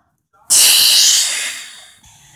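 A child's mouth-made hissing 'kshhh' sound effect, imitating an explosion in toy play. It starts suddenly about half a second in, loud, and fades away over about a second and a half.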